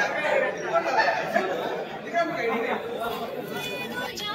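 Chatter of several people talking over one another in a large room.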